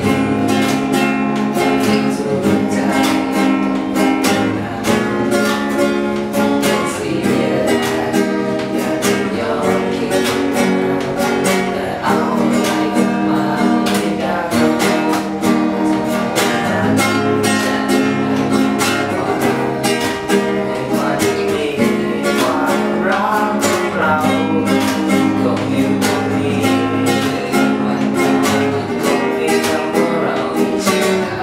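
Two acoustic guitars played together, strummed and picked, with a boy singing over them.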